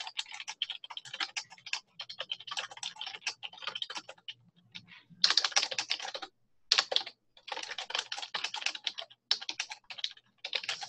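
Computer keyboard typing in quick runs of keystrokes, with a couple of short pauses.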